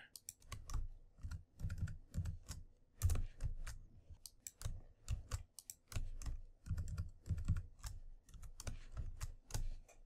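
Computer keyboard being typed on: quick, irregular key clicks in short runs, as the closing heading tags in an HTML file are edited.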